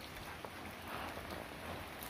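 Faint, steady outdoor background noise: an even hiss with a low rumble underneath and no distinct event.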